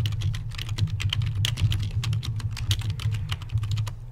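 Fast typing on a computer keyboard, a steady run of keystrokes several a second, as a sentence is typed out.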